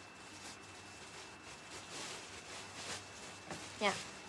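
Faint rustling and swishing of fabric being handled and pulled from a pile of cloth, with a few soft swishes.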